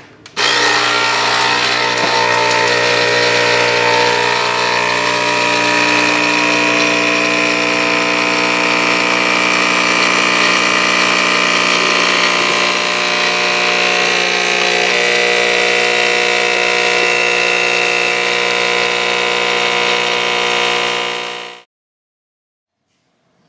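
Capsule coffee machine's pump running steadily as it brews coffee into a mug, a loud, even buzzing hum. It starts about half a second in and cuts off suddenly near the end.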